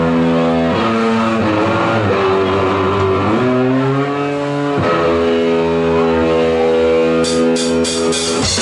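Live rock band: an electric guitar holding long sustained notes that slide and bend in pitch, over a low bass line. A few drum hits come in near the end.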